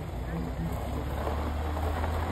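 A car engine running as a car pulls up close on the drive: a low, steady hum that grows about a second in, with people talking in the background.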